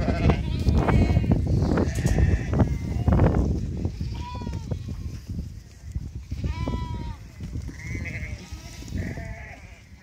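A large flock of sheep bleating, many calls overlapping. A heavy low rumble fills the first few seconds, then single bleats stand out more clearly and the sound thins out towards the end.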